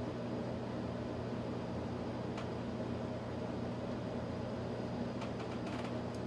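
Steady low machine hum in a small room, with a few faint light clicks of small plastic model parts being handled, once about two seconds in and a cluster near the end.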